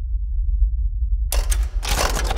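A deep low rumble, then about two-thirds of the way in a sudden run of sharp mechanical clicks as a player piano's roll mechanism starts up.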